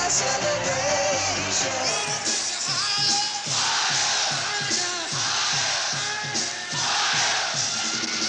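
Live rock music, with singing over a steady beat, and a crowd yelling and cheering that swells up three times in the middle.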